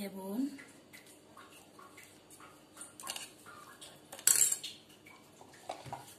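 A metal spoon clinks and scrapes against a metal saucepan while butter is scooped off it into the pot. There are a few separate knocks, the loudest a little past four seconds in.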